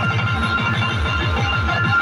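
Electronic dance music played loud through an eight-cabinet DJ sound-box stack topped with horn tweeters. A fast run of heavy bass hits, several a second, sits under sustained high synth tones.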